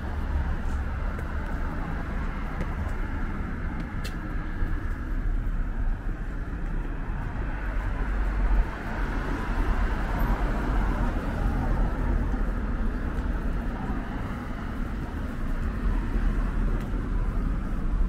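Street traffic: cars driving past on a wet road, the hiss of their tyres swelling and fading over a steady low rumble. One short click about four seconds in.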